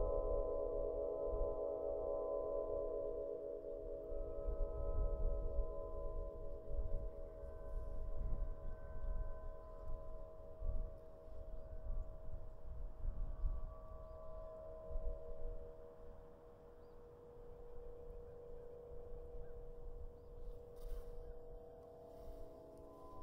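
Strings of a Celtic harp set out in the wind, sounding a cluster of steady, pulsing tones with no plucks, while higher tones join briefly now and then. The tones grow fainter in the last few seconds, and gusts of wind rumble on the microphone.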